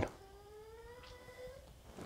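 A Chihuahua whining faintly: one thin whine, about a second and a half long, that rises slowly in pitch.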